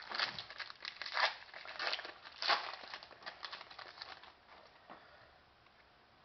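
A hockey trading-card pack wrapper being torn open and crinkled in the hands: a run of crackling rustles through the first three seconds or so that thins out and stops about five seconds in.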